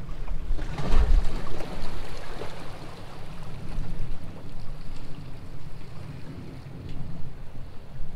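Wind buffeting the microphone, with a stronger gust about a second in, over small waves washing against the shoreline rocks.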